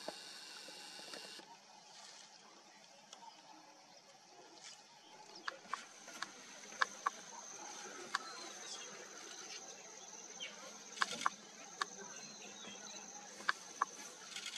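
Quiet bush ambience: a short buzz at the start, then from about five seconds in a steady high-pitched insect drone, with scattered sharp clicks and short chirps over it.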